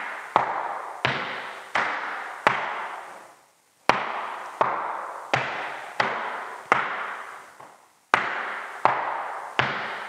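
Flamenco shoes striking a hardwood floor in a steady marking-time pattern for bulerías: single sharp steps about every three-quarters of a second, each ringing out in the room, with a beat left out twice.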